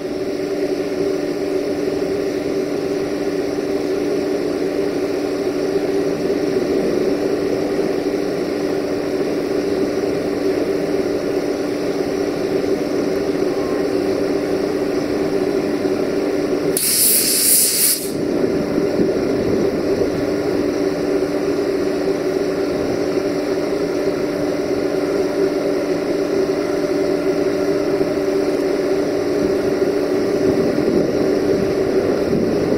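Electric locomotive running with a steady hum at a station, with one loud hiss lasting about a second roughly two-thirds of the way through.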